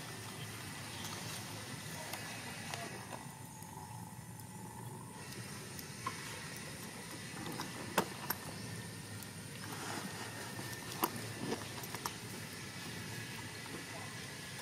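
Steady outdoor background hiss, with a few short sharp clicks in the second half.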